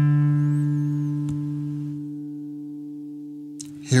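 Guitar's fourth (D) string sounded open as a tuning reference note, ringing on and slowly dying away, with a faint click about a second in. The note stops abruptly near the end.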